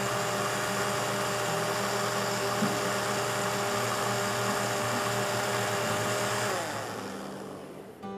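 Countertop blender running at high speed, puréeing onion soup, with a steady motor whine. About six and a half seconds in the motor is switched off and winds down, its pitch falling as it fades.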